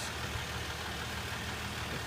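Steady low idle of the Ram 1500's 3.0-litre EcoDiesel V6 engine, an even hum with no revving.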